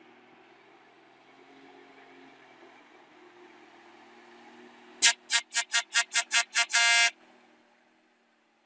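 Truck horn sounded in eight quick toots, about five a second, ending in one slightly longer blast, over the faint low running of a heavy truck engine.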